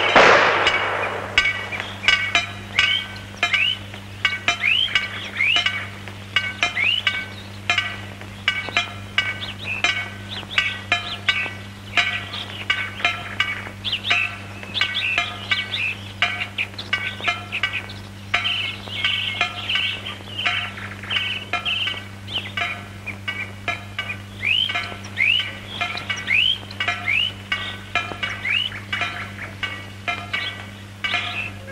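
A single gunshot from a long gun right at the start, its report dying away over about a second. It is followed by continuous bird song, many short chirps and quick falling whistles, over a steady low hum in the old film soundtrack.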